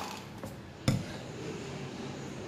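A single sharp knock of a stainless steel mixer-grinder jar being handled on the countertop just under a second in, with a fainter click shortly before it.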